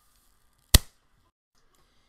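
One sharp click about three quarters of a second in, otherwise near silence.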